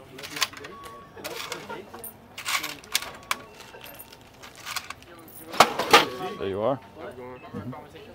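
Cash sale being rung up at a store register: paper bills handled with rustles and clatter, and a few short electronic beeps from the register keypad.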